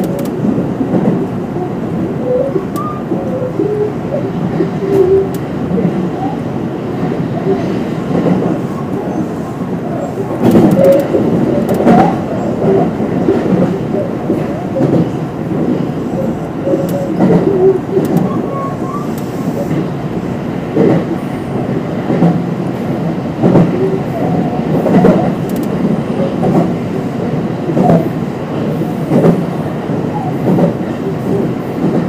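Electric commuter train running on the line, heard from inside the front car: a steady rumble with repeated knocks as the wheels pass over rail joints.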